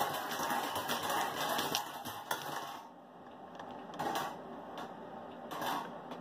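Wire bingo cage turned by its hand crank, the balls rattling and clattering inside for about three seconds before it stops. A few light clicks follow as a ball is taken out.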